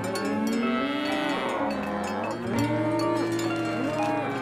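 Cartoon cows mooing: several long, low moos, one after another and overlapping, with cowbells clanking.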